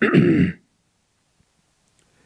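A man briefly clears his throat into a close microphone, about half a second long.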